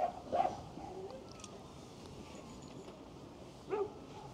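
A dog barking: two short barks in quick succession at the start and one more near the end, over low crowd murmur.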